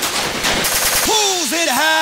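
Industrial techno breakdown with the kick drum dropped out: a very rapid, machine-gun-like percussion roll, joined about a second in by a sampled man's voice calling out.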